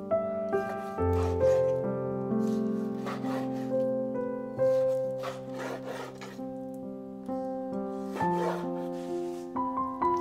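A chef's knife slicing raw chicken breast into strips on a wooden cutting board: a series of irregular cutting strokes, each ending in a soft knock on the wood. Background music with held notes plays underneath.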